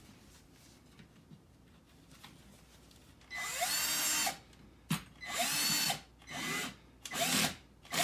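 Cordless drill turning a cut-down Allen key to drive a screw into the wooden frame, run in about five short trigger bursts that start about three seconds in, the motor pitch bending up as each burst starts. A single sharp click falls between the first two bursts.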